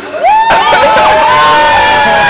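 A crowd of people cheering and shouting together, breaking out suddenly about half a second in and staying loud.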